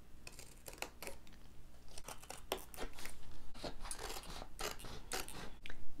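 Scissors cutting through poster board: a run of short, irregularly spaced snips.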